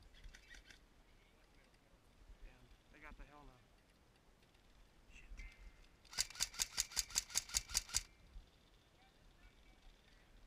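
Airsoft electric rifle (AEG) firing a rapid burst, about a dozen sharp shots in under two seconds, starting about six seconds in. A faint voice is heard a few seconds earlier.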